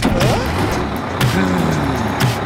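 Cartoon vehicle sound effect of a bus engine running, a dense noisy rumble that sets in suddenly, over background music.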